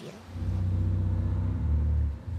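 A low, steady, pitched rumble starting about half a second in, a sound effect for the very old boat in the port.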